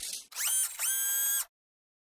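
Electronic title-card sound effect ending the intro music: two synthesized tones, each sliding up into a held pitch, then cut off abruptly about one and a half seconds in.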